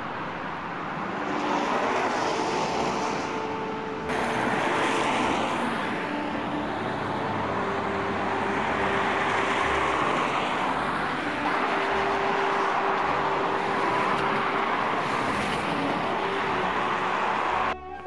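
Road traffic on a wet, slushy street: a steady hiss of car tyres on wet asphalt. It changes abruptly about four seconds in and cuts off suddenly just before the end.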